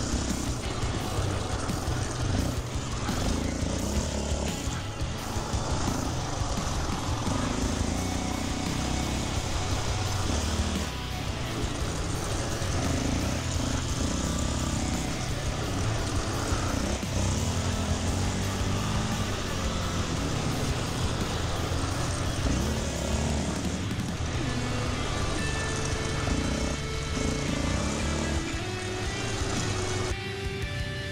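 Quad (ATV) engine revving up and down as it is ridden around a rough grass dirt track. Guitar music comes in over it in the last few seconds.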